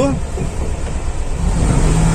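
Volkswagen Kombi engine idling, heard from inside the cab as a steady low hum, with a slightly higher steady drone joining about one and a half seconds in.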